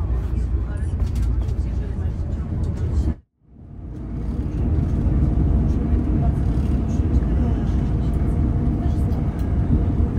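Cabin noise inside a Class 220 Voyager diesel-electric train running at speed: a steady low rumble from the underfloor engine and the wheels on the track. About three seconds in the sound cuts out abruptly and then fades back in over a second or so.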